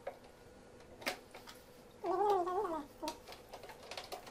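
A few sharp plastic clicks from filter cartridges and fittings being handled, then a short wavering cry about two seconds in, the loudest sound.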